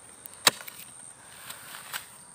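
A hoe blade striking hard, compacted soil while digging. One sharp strike comes about half a second in, followed by fainter knocks near the end.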